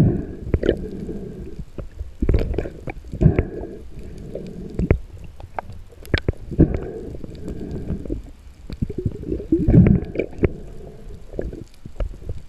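Underwater noise heard through a camera housing: irregular low rumbling and gurgling of water moving past in surges, with scattered sharp clicks and knocks.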